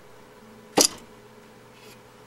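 A single sharp click about a second in, as a hand handles the circuit boards and ejector tabs in a metal card cage, over a faint steady electrical hum.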